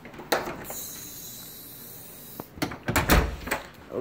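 A room door being shut: a click, then a cluster of knocks with a heavy thump about three seconds in.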